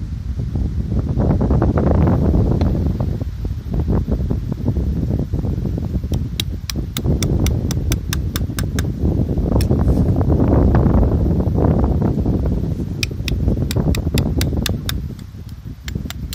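Wind rumbling and gusting on the phone microphone, swelling twice. Two quick runs of light, sharp clicks, about four or five a second, come partway through and again near the end.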